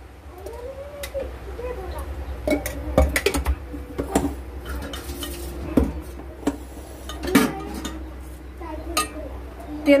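Metal kitchenware being handled at a gas stove: irregular clinks and knocks of pots and utensils scattered through, over a low steady rumble.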